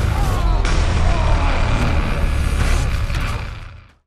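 Loud, dense, bass-heavy music and film sound effects, fading out near the end.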